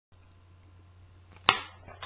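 A faint steady low electrical hum, then a single sharp, loud knock about one and a half seconds in.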